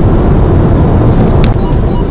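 Steady road and engine noise of a car cruising at motorway speed, heard from inside the cabin, with a few brief high clicks about a second in.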